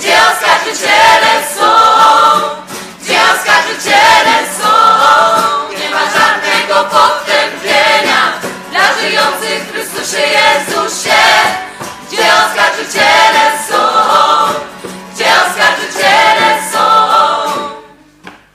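A choir singing a religious pilgrimage song; the singing stops right at the end.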